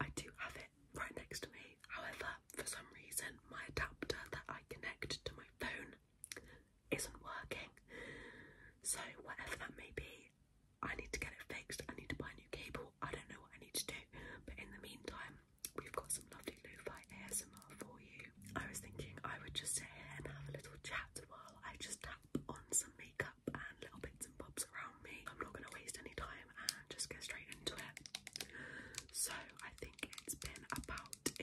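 Soft whispered talking, close to the microphone, throughout. Many sharp little clicks from long fingernails tapping run through it.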